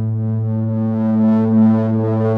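Instrumental intro of a song: a synthesizer holds one low sustained note, a steady drone that grows brighter with a gentle pulse about a second in.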